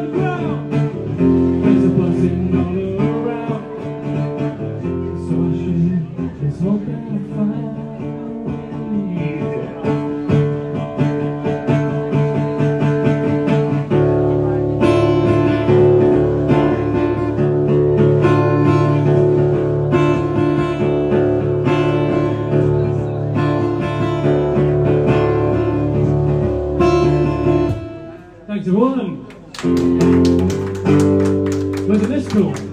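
Guitar playing an instrumental passage at the end of a song: held chords and picked notes, strummed harder and louder from about halfway through, then stopping near the end.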